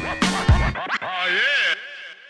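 Turntable scratching over a hip hop beat. The beat cuts out just under a second in, and the last scratched sound repeats and dies away in echoes as the track ends.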